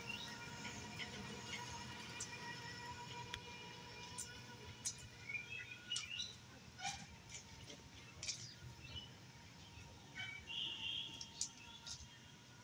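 Faint ambience of birds chirping now and then, with a few light clicks.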